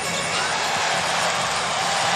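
Steady crowd noise in a basketball arena during live play.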